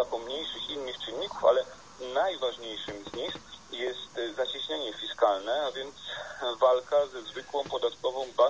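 Continuous speech from a television set's speaker, with a thin, radio-like quality and a steady high-pitched whine underneath.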